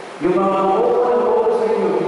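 A man's voice through a microphone, drawn out and sing-song with long held pitches, like chanting, starting a moment in.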